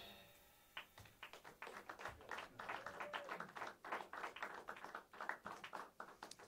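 Faint, scattered clapping from a small audience after a jazz number, starting about a second in and thinning out near the end, after the last ring of the drum-kit finish dies away.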